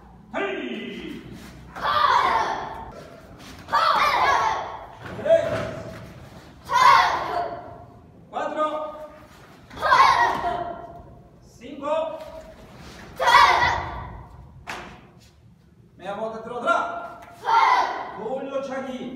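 A group of children drilling taekwondo moves, shouting together on each technique about every second and a half, with thuds of bare feet on foam mats; the hall echoes.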